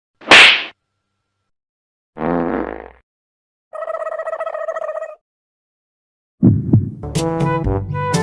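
Edited-in comic sound effects separated by complete silence: a loud slap near the start, a short effect a little after two seconds, and a held wavering tone of about a second and a half. Background music starts about six and a half seconds in.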